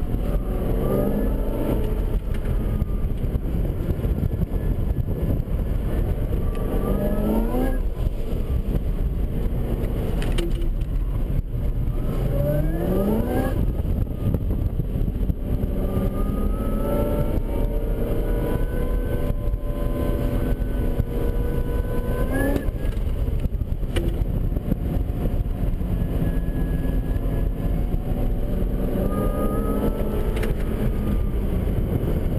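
Supercharged C6 Corvette V8 heard from inside the cabin, driven hard through an autocross course. Its revs climb and drop again and again as the throttle is opened and closed. Several climbs break off sharply at the top.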